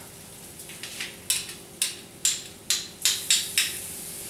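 A hand-held metal garlic press and a spoon clicking and scraping together as crushed garlic is worked out of the press over the pan. There are about eight sharp clicks roughly half a second apart, starting about a second in.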